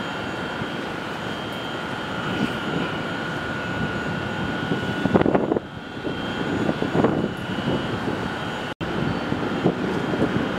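Steady city din heard from high above: a constant rumble of distant traffic with a thin steady high tone, swelling louder about five seconds in and again about seven seconds in. The sound drops out for an instant just before the end.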